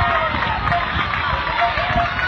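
High-pitched voices, children's or spectators', shouting and calling in long, wavering cries over a steady low rumble.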